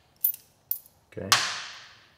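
Two light metallic clicks of a T-handle hex wrench working a steel mounting bolt on a motorcycle's exhaust muffler box, with a sharper clink just over a second in.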